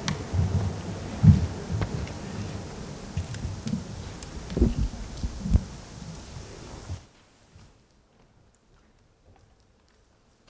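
Dull low thumps and rustling over room noise, as the officials at the desk microphones get up and move away; the loudest thumps come about a second in and around five seconds in. The sound cuts off abruptly about seven seconds in, leaving near silence.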